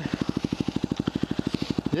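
Yamaha WR250R's 250 cc single-cylinder four-stroke engine idling through an FMF Q4 full exhaust: a steady, rapid train of even exhaust pulses, about fifteen to twenty a second.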